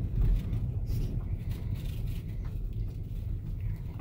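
Low steady rumble of a BMW's engine and tyres heard from inside the cabin while it drives slowly, with a brief low thump just after the start.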